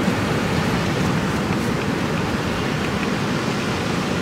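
Ocean surf breaking along the shore: a steady, even rushing of white water.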